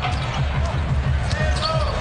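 A basketball being dribbled hard on a hardwood court during a drive, with a short sneaker squeak near the end, over arena music with a steady bass beat.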